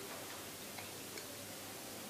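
Quiet room with a steady hiss and a few faint, light clicks of cutlery on china plates during a meal.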